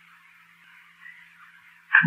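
A pause in a man's speech, holding only the recording's faint steady hiss and a low hum; his voice comes back right at the end.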